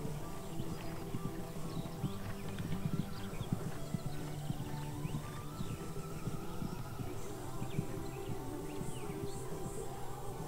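Background music with the hoofbeats of a horse cantering on grass turf, heard as dull thuds.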